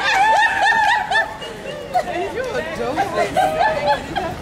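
High-pitched laughter and excited voices from a crowd of onlookers, densest and loudest in the first second or so, then thinning out.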